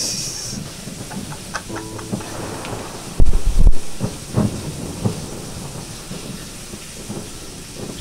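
A few scattered plucked oud notes and handling noises. Two heavy low thumps about half a second apart, a little past three seconds in, are the loudest sounds.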